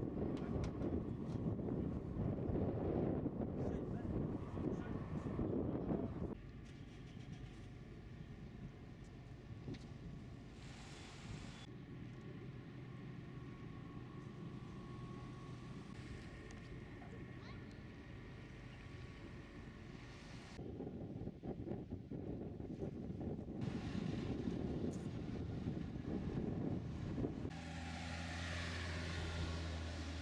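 Outdoor ambience that changes with each cut. Wind rumbles on the microphone at the start and again later, with a quieter stretch and a faint steady hum between. Near the end a steady low engine drone comes in.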